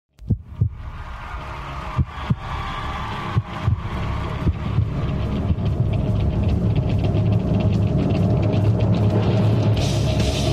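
Opening intro music with sound design: pairs of deep hits like a heartbeat, about every second and a half, over a low drone that swells steadily louder, building toward a rock guitar theme.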